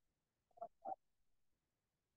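Near silence: room tone, with two faint short sounds a little over half a second in.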